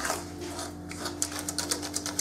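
A metal utensil beating egg, sugar and honey in a stainless steel pot, at first a soft stirring, then from about a second in a fast, even clicking against the pot's side, about ten strokes a second.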